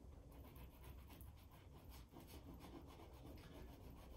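Faint, repeated scratchy strokes of an oil paint stick rubbed across unprimed rag paper.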